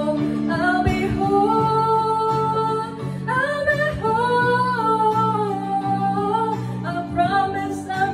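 A woman singing solo into a microphone, drawing out long held notes that slide between pitches with no clear words, over a sustained chordal instrumental accompaniment.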